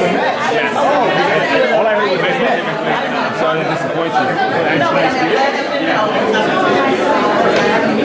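Crowd chatter: many people talking at once in a room, with overlapping conversations at a steady level and no single voice clear enough to follow.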